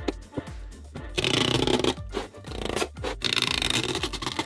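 Protective film being peeled off a plexiglass sheet, crackling in two loud stretches, the first about a second in and the second near the end, over background music with a steady beat.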